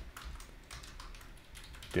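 Typing on a computer keyboard: a run of light key clicks.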